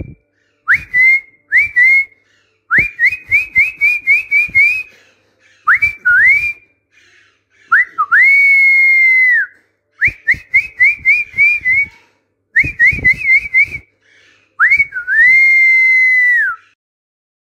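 Whistling, played as a training sound for a parrot to copy. It comes in separate phrases with pauses between them: short rising whistles, quick runs of rising chirps, and a couple of long held notes that drop at the end.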